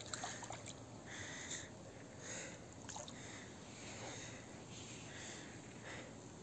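Faint breathing close to the microphone, a soft breath about every second, with a few light clicks of handling in the first second and again about three seconds in.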